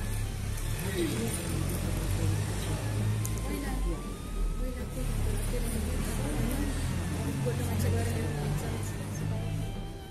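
Music with a heavy, steady low bass, mixed with indistinct voices of a gathered crowd.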